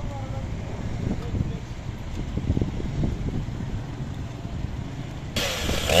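Low, uneven rumble of street traffic and idling vehicles. Near the end it cuts suddenly to a chainsaw running, its pitch rising as it revs up.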